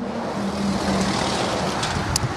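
Road traffic passing close by: a vehicle's tyre and engine noise swells and then eases off, over a steady low engine hum.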